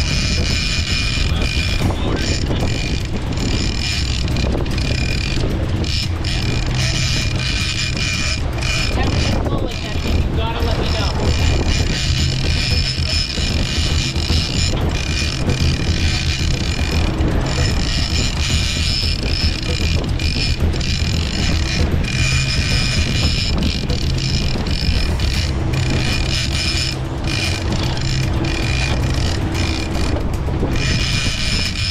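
A boat engine running under way with water rushing along the hull, and a big lever-drag trolling reel being cranked hard to gain line on a hooked bluefin tuna. The mix is steady throughout.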